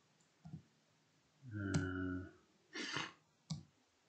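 A few scattered keystrokes on a computer keyboard while typing code, with a short low hum about halfway through and a breathy noise just after.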